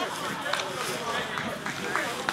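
Indistinct, overlapping chatter of spectators, with no single voice standing out, and a couple of short clicks, one about half a second in and one near the end.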